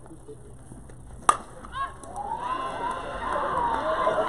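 A fastpitch softball bat hitting the pitched ball once, a single sharp crack about a second in, followed by spectators and players shouting and cheering, growing louder.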